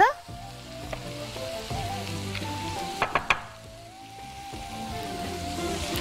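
Food sizzling steadily as it fries in oil in pans on a stove, with two sharp clicks a little after three seconds in.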